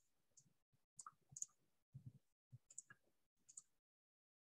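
Very quiet, irregular clicking, about eight clicks spaced roughly half a second apart, from a computer mouse being used.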